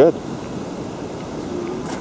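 Steady low outdoor background rumble, like wind on the microphone, with a short click near the end.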